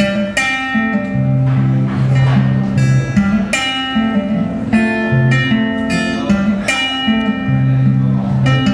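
A solo acoustic guitar plays an instrumental break with no singing: picked notes and chords ring over a moving bass line.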